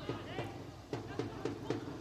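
Faint distant voices calling out on a football pitch, over low open-air ambience of play.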